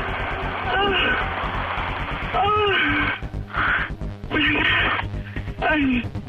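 A woman's drawn-out moans over a telephone line, rising and falling in pitch several times, with background music running underneath.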